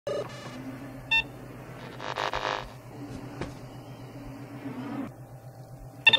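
Small television set being switched on: a short electronic beep about a second in, a brief hiss of static around two seconds, then a sharp click, over a steady low electrical hum.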